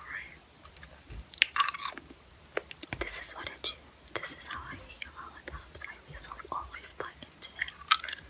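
Close-miked mouth sounds of a lollipop being eaten: wet smacks, tongue clicks and chewing at irregular intervals.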